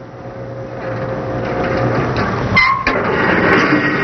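Seat-belt convincer sled rolling down its inclined track, its rumble growing louder, with a brief squeal about two-thirds of the way in.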